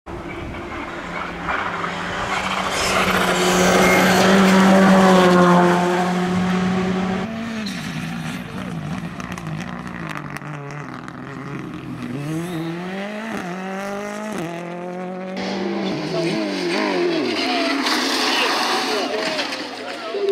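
Rally car engines at full throttle passing on a tarmac stage. The loudest part is a long, steady, high-revving note; later the pitch climbs and drops repeatedly through quick gear changes.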